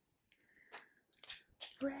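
A woman's voice singing softly, "red, red, red", on a steady note, starting near the end. Before it come a few short hissing sounds.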